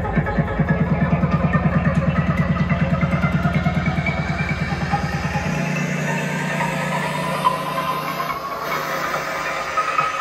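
Psytrance playing loud through a club sound system: a driving kick and rolling bassline pulse rapidly. About halfway through, the kick and deep bass drop out, leaving a held bass tone and a synth line that slowly rises in pitch as a build-up.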